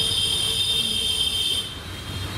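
A loud, steady high-pitched whine of a few tones together, over a low hum, that cuts off suddenly near the end.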